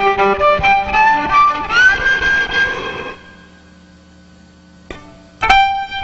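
Violin playing a candombe melody over piano and candombe drums, sliding up into a long held note about two seconds in. The band then drops almost out, leaving only a faint held tone for about two seconds, before the violin comes back in loud on a held note near the end.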